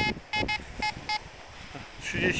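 Fisher F22 metal detector giving its target signal: about five short beeps at one pitch in the first second or so as the coil passes over a buried target. The reading is around 41, which the detectorist takes for a possible 2 or 5 złoty coin.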